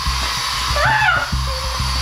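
Aerosol insect spray can hissing in one continuous burst of about two seconds, aimed at a spider on the wall. A short rising-and-falling squeal comes about a second in, over background music.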